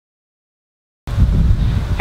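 Silence, then about a second in the sound cuts in abruptly with wind buffeting the microphone outdoors, a low rumble.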